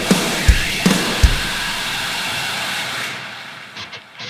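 Heavy rock band music with no vocals. Four kick-drum strikes come in the first second and a half over a dense, sustained wash of band sound, which fades out over the last second.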